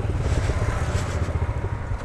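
Motorcycle engine running at low revs with an uneven low pulsing as the bike rolls slowly, heard through a helmet-mounted camera with a light hiss of wind.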